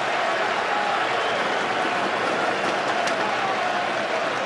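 Large stadium crowd cheering and applauding steadily after a goal.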